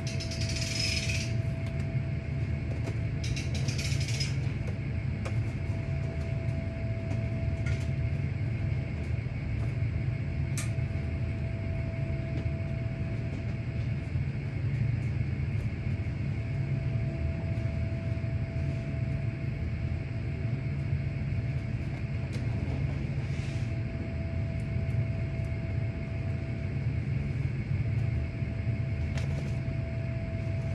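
Steady low mechanical hum with a faint constant tone above it. Two short bursts of hiss come in the first few seconds, and a few faint clicks follow later.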